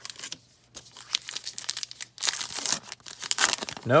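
Trading card pack wrapper crinkling and tearing as it is pulled open by hand, in a run of crackles that is loudest around the middle.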